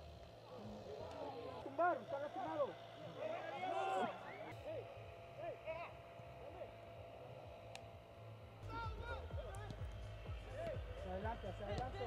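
Players' distant shouts and calls across a football pitch during open play, over background music.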